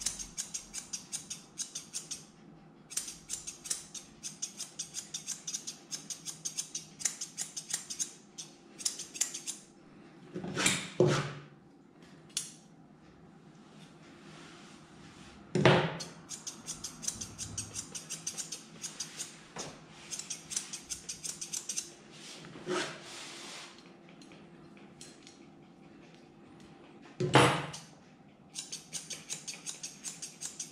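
Grooming scissors snipping through a dog's fur, in quick runs of many snips a second with short pauses between. A few louder brief noises stand out among them.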